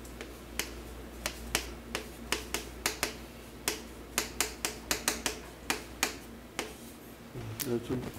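Chalk striking and tapping on a chalkboard as a formula is written: a run of sharp, irregular clicks, a few per second, that stops about six and a half seconds in, over a steady low electrical hum.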